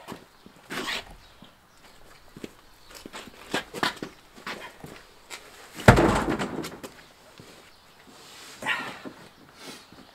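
A heavy truck wheel and tire dropped flat onto concrete under a raised truck, landing with a single heavy thud about six seconds in, amid scuffing and footsteps.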